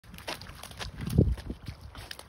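Airedale terrier's paws splashing through a shallow muddy puddle: a few irregular splashes, the loudest about a second in.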